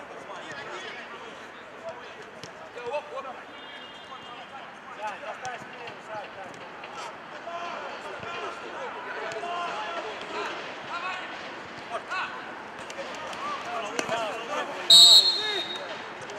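Players shouting on a minifootball pitch, with the thuds of the ball being kicked. About a second before the end, a referee's whistle gives one short, loud, shrill blast, stopping play for a foul.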